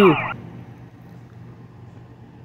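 Emergency-vehicle siren in a fast yelp, its pitch sweeping up and down about three times a second, cutting off suddenly a third of a second in. After it there is only a faint low hum.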